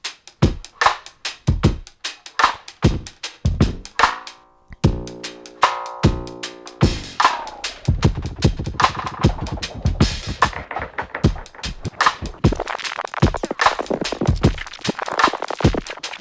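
A drum-machine beat played through a delay effect, its delay time and feedback being swept by hand from a touchpad. The echoes of the hits stutter and change speed, turn into a pitched buzzing tone for about two seconds around the middle, and then pile up into a dense wash of repeats in the second half.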